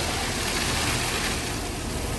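Wheel loader's diesel engine running while a bucketful of pumice pours from the tipped bucket into a pickup's bed, a steady rushing hiss over the engine's low hum.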